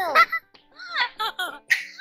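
A young child's voice giggling in short bursts, over light background music.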